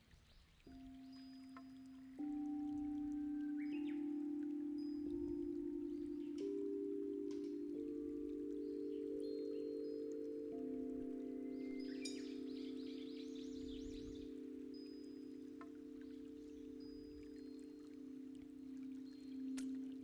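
Crystal singing bowls struck one after another with a mallet. Each rings on as a steady pure tone, so the tones build into a sustained layered chord. About twelve seconds in, a brief shimmer of high chime notes sounds over them.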